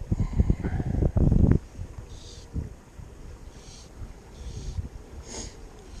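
Wind buffeting the microphone in a loud low rumble for about the first second and a half, then dropping to a quieter stretch with a few faint, brief hisses.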